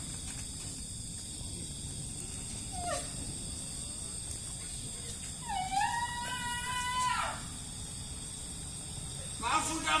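A single drawn-out wailing cry lasting nearly two seconds, rising at the start, held, then dropping away, over a steady low background noise. A shorter falling cry comes about three seconds in.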